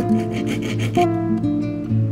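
A needle file rubbing quickly back and forth on a sterling silver piece, a fast run of raspy strokes that stops about a second in. Acoustic guitar music plays throughout.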